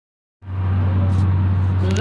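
A steady low hum from the kirtan's sound system with a faint hiss, cutting in about half a second in, as the microphones and speaker come live; a harmonium note starts just at the end.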